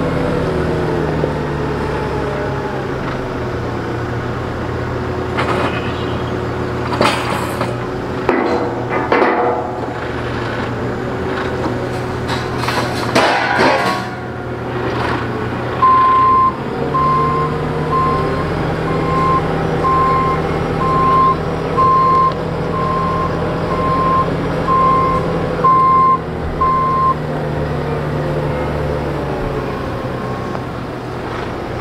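JCB AgriPro telehandler's diesel engine running as the machine manoeuvres, with a run of clanks and knocks in the first half. From about halfway its reversing alarm beeps evenly, a little more than once a second, for some eleven seconds.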